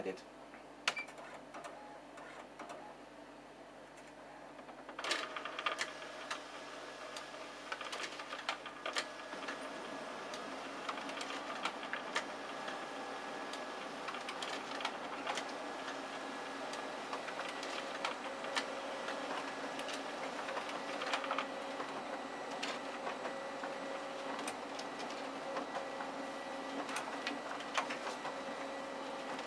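Konica Minolta magicolor colour laser multifunction printer making single-sided colour photocopies. After a few quiet seconds it starts up about five seconds in, then runs steadily with a whirring hum and frequent clicks as the document feeder pulls the originals through and the copies are printed.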